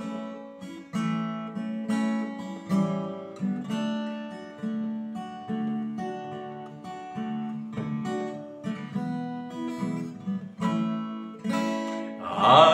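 Acoustic guitar strumming chords at an even pace, the instrumental introduction to a hymn.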